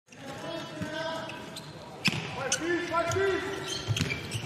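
Handball match sound in an empty sports hall: the ball knocking on the court floor as it is dribbled and passed, the sharpest knock about two seconds in, with players shouting to each other and no crowd noise.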